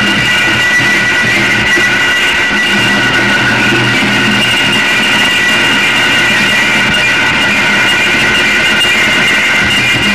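Live noise music: a loud, unbroken wall of distorted electronic noise with several held high-pitched tones over a low rumble, played through amplification.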